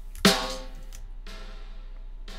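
Recorded snare drum hits played back through a plate reverb, giving a traditional snare reverb sound with a smeared decaying tail after each hit, one about a second in.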